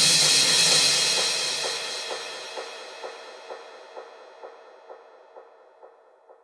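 The ending of an electronic body music (EBM) track: a cymbal-like crash decays over several seconds, while a short echoing blip repeats about twice a second and fades out with it.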